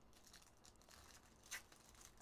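Faint crinkling and tearing of a foil trading-card pack wrapper being ripped open and crumpled by hand, with one louder crackle about one and a half seconds in.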